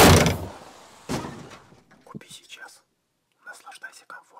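Sound effects for an animated logo: a loud impact at the start that fades out slowly, a second, weaker hit about a second in, a few light clicks, then short voice-like sounds near the end.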